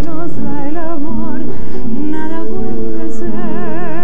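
A woman singing a bolero with a wide, even vibrato and long held notes, accompanied by acoustic guitars.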